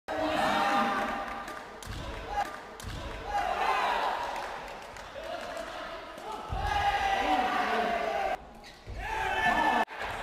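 Excited voices shouting through a sepak takraw rally, some calls drawn out, with four dull thumps spread through it.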